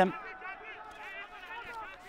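Faint open-air football stadium ambience during a pause in commentary, with distant, indistinct voices from the pitch.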